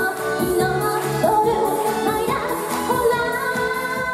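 A female vocalist singing an upbeat dance-pop song live into a handheld microphone over backing music with a steady beat.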